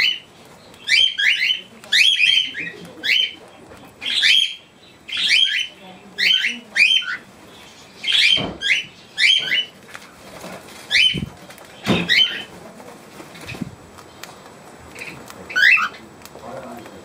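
Cockatiel calling loudly close to the microphone: short rising whistled calls, often in pairs, about one a second, thinning out after about twelve seconds. A few dull knocks come in the second half.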